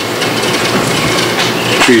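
A rough, even rustling or crunching noise at a level close to that of the talk, over a steady low hum; a voice comes in near the end.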